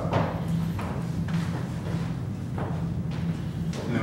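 Dancers' shoes stepping and sliding on a hardwood floor, a soft scuff or thud about once a second, over a steady low hum.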